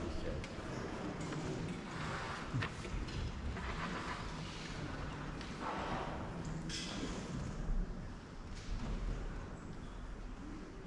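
Hushed sound of a seated audience and brass band settling before playing: faint shuffling, small knocks and low murmuring, with no music yet.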